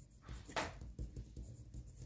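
Pen writing a word on paper in a few short, faint scratching strokes.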